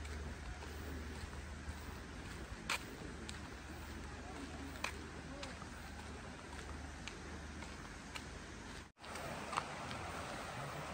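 Outdoor walking ambience: a steady low wind rumble on the microphone, faint distant voices, and a few sharp footstep clicks on the path. A brief break in the sound near the end where the recording cuts.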